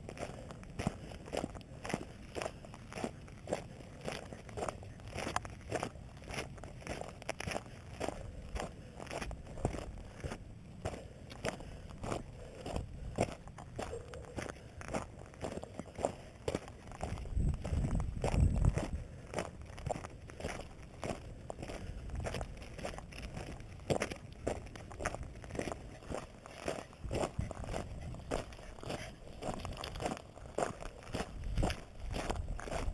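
Footsteps crunching on loose gravel and rock at a steady walking pace, about two steps a second. A low rumble swells briefly a little past halfway.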